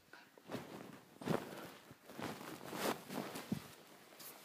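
Handling noise: a handful of soft rustling swishes and light knocks as the phone or camera is moved about and things are picked up over a fabric bedspread.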